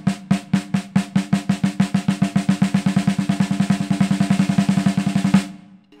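Copper-shell snare drum played with sticks: a run of strokes that starts spaced and speeds up steadily into a dense roll, then stops with a final accented stroke about five and a half seconds in, the drum's ring dying away after it.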